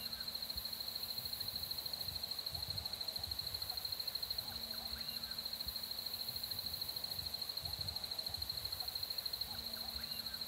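Bush ambience: an insect trilling continuously, a steady high-pitched, rapidly pulsing drone, with a few faint distant bird calls.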